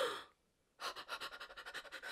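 A woman's sharp, excited gasp about a second in, trailing off into quiet breathy sound.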